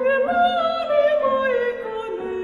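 A female operatic voice singing held notes with vibrato, stepping to a higher note about a quarter second in, over a steady lower accompanying note.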